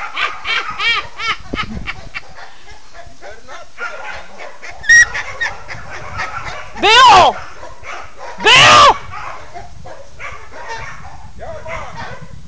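Border collie dogs barking and yipping: a quick run of short, high yips in the first second and a half, then two louder, longer calls about seven and eight and a half seconds in.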